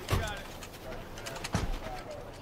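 Two heavy SUV doors slamming shut about a second and a half apart, with birds calling faintly in the background.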